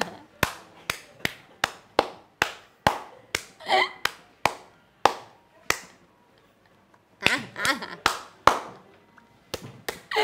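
A woman laughing and clapping her hands, about two claps a second, slowing a little; the claps stop about six seconds in, then laughter and a few more claps come back near the end.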